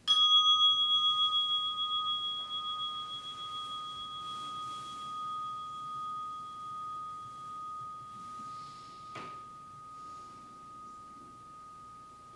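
A single meditation bell strike, ringing out with a slow wavering pulse and fading gradually over about ten seconds, marking the end of the sitting. A brief knock about nine seconds in.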